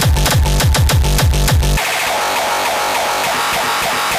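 Frenchcore music: a fast, heavy kick drum, each hit falling in pitch, pounds until a little under two seconds in, then drops out, leaving a synth breakdown without the kick.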